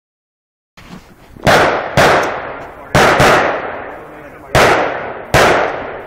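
Rifle fired in a string of single shots, about half a second to a second and a half apart, each shot loud and sharp with a long echo dying away behind it.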